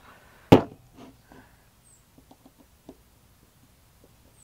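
An aerosol can being set down on a plastic folding table: a single sharp knock about half a second in. It is followed by a few light clicks and taps of a carburetor and small parts being handled on the table.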